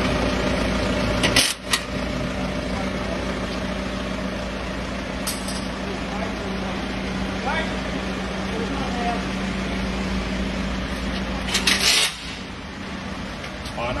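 Steady low mechanical hum of running machinery, broken by a few short, sharp noisy bursts, the loudest about a second and a half in and just before the hum drops away about twelve seconds in.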